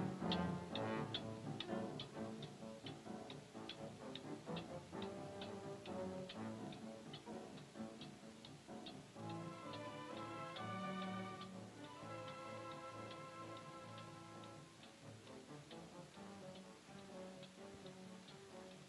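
A pendulum clock ticking with a steady, quick, even beat, under orchestral film score with held brass notes.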